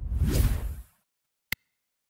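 Whoosh sound effect swelling and fading within about the first second, then a single short click about a second and a half in: end-screen animation effects of a logo sweeping in and a mouse click on a subscribe button.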